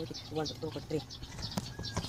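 A boy counting aloud fast in a steady rhythm, a few numbers a second.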